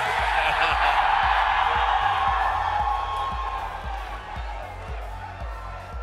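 Large crowd cheering and whooping. It swells at once, peaks about a second in and fades over the next few seconds, over background music with a steady bass beat.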